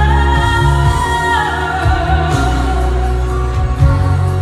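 A woman singing a long held note into a microphone over musical accompaniment; the note steps down about a second in and fades out a little later, leaving the accompaniment playing on.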